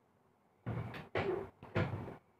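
Three short, loud bursts of knocking and scraping, starting a little over half a second in, close to the microphone.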